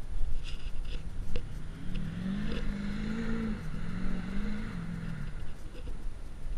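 Pickup truck engine revving: the engine note climbs about two seconds in, holds and wavers for a few seconds, then drops away near the end, over a steady low rumble.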